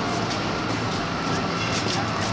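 Steady city street noise, mostly traffic, with a low even hum.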